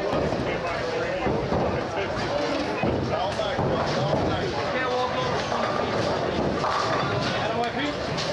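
Busy bowling alley: many people talking over one another, with scattered knocks and clatter from balls and pins.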